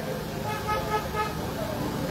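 Vehicle horn tooting a few short times, about half a second to a second in, over outdoor background voices and traffic noise.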